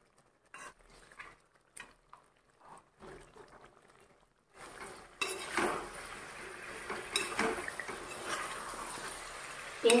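Metal slotted spatula stirring chicken feet in a metal kadhai. At first there are only a few faint clicks; from about halfway a steady frying sizzle sets in, with the spatula knocking and scraping against the pan.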